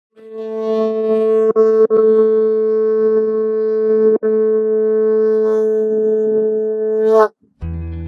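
A kelp horn, blown like a vuvuzela, sounding one long, steady low note that is really loud. The note breaks off briefly about one and a half, two and four seconds in, then stops suddenly about seven seconds in.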